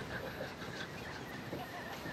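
Quiet outdoor background with faint, scattered bird chirps.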